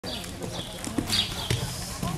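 Horse's hoofbeats on the soft dirt footing of an indoor riding arena, with a couple of sharper thumps about a second and a second and a half in.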